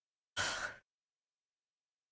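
A woman's short, breathy sigh, about half a second long.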